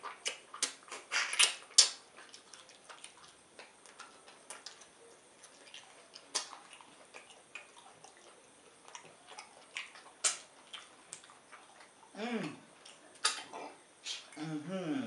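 Close-miked wet mouth sounds of eating slimy ogbono-okra soup by hand: lip smacks, finger sucking and sticky clicks, thickest in the first two seconds, then scattered. Near the end comes a short hummed "mmm" that falls in pitch.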